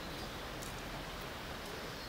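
Steady rush of a river in flood, fast brown floodwater running past a moored hand ferry.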